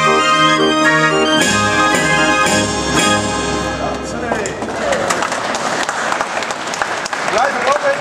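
Hand-cranked Dutch street organ (draaiorgel) playing the end of a tune, its last chords struck sharply, then stopping about halfway through. The audience then applauds.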